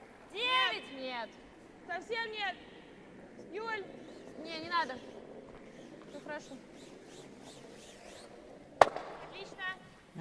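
Curling players shouting short sweeping calls while their brooms scrub the ice ahead of a sliding granite stone. About nine seconds in comes a single sharp crack of the stone striking another stone.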